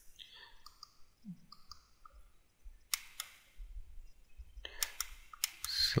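Computer mouse clicks: two about three seconds in, then several in quick succession near the end, as objects are picked on screen.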